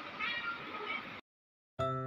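A kitten's short, high mew about a quarter second in, with fainter mewing after it. Then the sound cuts out, and piano music starts near the end.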